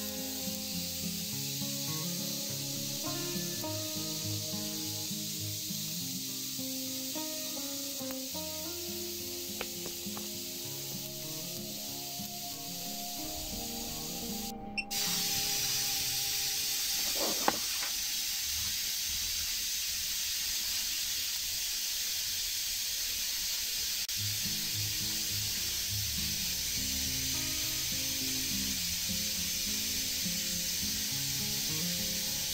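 Steady hiss of corona discharge from a high-voltage ion thruster's copper-wire electrodes, under background music. The hiss steps up in level about halfway through, and a single sharp click follows a couple of seconds later.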